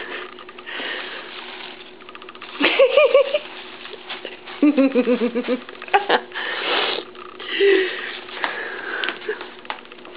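A woman laughing: a short laugh about three seconds in, and a longer, pulsing laugh near the middle.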